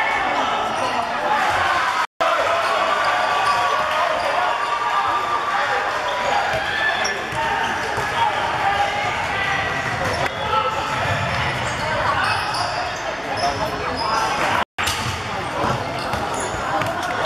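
A basketball bouncing on a hardwood court during play, over steady shouting and chatter from players and spectators in a large hall. The sound breaks off briefly twice, at edit cuts.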